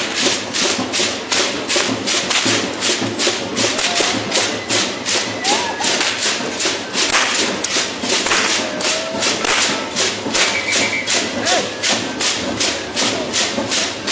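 Percussion of a traditional danza troupe playing a steady marching beat, about three strokes a second, each stroke with a bright rattling edge, as of drum and shaken rattles.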